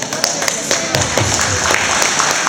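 Scattered hand clapping from a small audience: irregular sharp claps over a murmur of voices.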